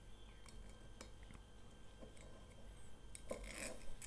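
Faint small clicks and crinkling as the seal is torn from the neck of a glass whisky bottle and its stopper is worked loose, with a sharper click a little past three seconds in.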